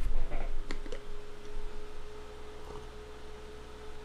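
Faint steady hum held at one pitch, with two light clicks about a second in.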